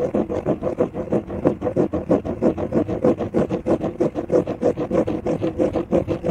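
Pink plastic Spirograph gear rolled around inside a blue toothed plastic ring under pen pressure, its teeth clicking against the ring's teeth in a rapid, even rattle.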